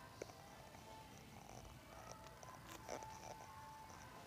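Near silence: faint supermarket room tone with a low steady hum and a couple of soft clicks.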